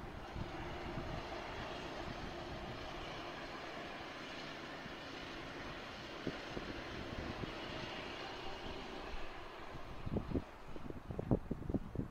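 A steady, even rumble of distant machinery or traffic. Irregular low bumps come in during the last two seconds.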